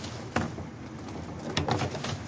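Cardboard boxes and plastic bags being handled and shifted about inside a metal dumpster: a sharp knock about a third of a second in, then a quick run of crinkles and clicks near the end.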